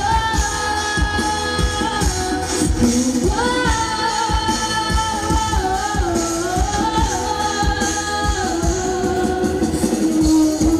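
A woman singing a pop song live into a microphone over a band with drum kit and keyboards, holding long notes over a steady drum beat.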